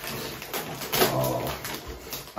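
Gift wrapping paper crinkling and rustling as it is handled and pulled open by hand, with a faint voice briefly about a second in.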